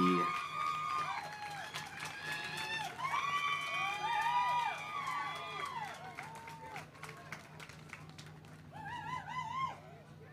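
Faint, high-pitched voices of several people in the audience overlapping, over a low steady hum. The voices trail off after about seven seconds and pick up again briefly near the end.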